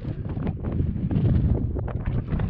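Strong wind buffeting the microphone: a loud, uneven low rumble that keeps rising and falling with the gusts.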